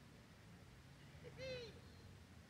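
Near silence, broken by one short bird call about one and a half seconds in, rising then falling in pitch.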